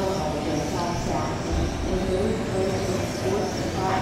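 1/12-scale electric RC pan cars with 13.5-turn brushless motors running laps, their high motor whine rising and falling as they accelerate and brake, under indistinct voices.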